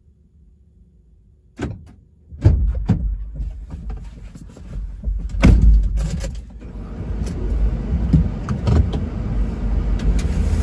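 A delivery van's door clicking open, then a run of knocks and clunks as someone climbs in and moves around, over a steady low rumble.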